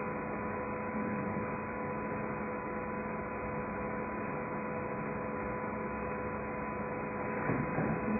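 Steady electrical hum with a few constant tones over a background hiss, the noise floor of the recording.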